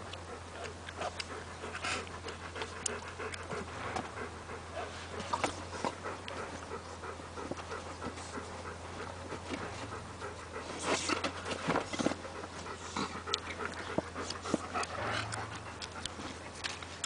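Dog panting, with scuffs and scrapes of paws in sand as it digs and plays with a ball.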